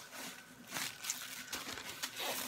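Plastic shopping bag and packaging crinkling as a hand digs through it, in a few short rustles, the loudest about a second in.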